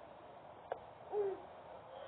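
A pitched baseball ends in a single sharp smack, followed about half a second later by a short, slightly falling shouted call from a voice.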